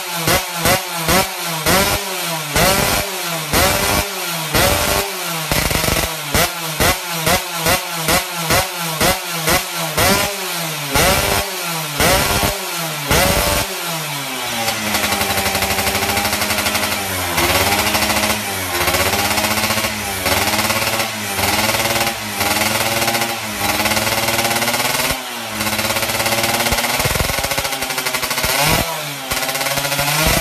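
Yamaha F1ZR underbone's 116 cc two-stroke race engine being revved: quick sharp throttle blips, about two a second, for the first half, then held at high revs, wavering, for about fifteen seconds, and blipped again near the end.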